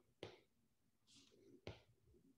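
Near silence: room tone, with two faint short clicks, one about a quarter second in and one near the end.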